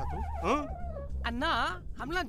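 High, whimpering cries with a wavering pitch, several in a row, some sliding upward, over a steady low hum.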